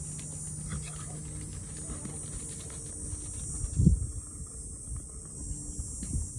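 Outdoor ambience: a steady high-pitched insect chorus, with low wind rumble on the microphone and a strong gust about four seconds in.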